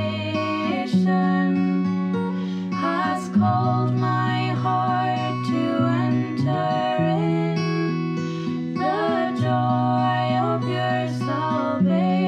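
A hymn sung to strummed acoustic guitar accompaniment.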